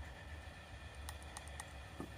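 Faint, light metallic clicking, a quick run of small ticks in the second half, as a rocker arm on a BMW R1200GS cylinder head is rocked by hand. The free play that lets it click shows those valves are closed.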